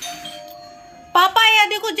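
An electronic doorbell chime rings out and fades away over about a second. A woman's high-pitched voice then cuts in loudly, calling out.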